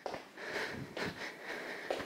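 A woman breathing hard in quick puffs in and out, winded from the effort of a cardio exercise.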